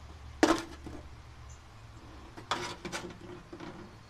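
Hard objects being handled and set down, with metallic clinks and knocks: one sharp knock about half a second in, then a cluster of clinks and knocks around the three-second mark.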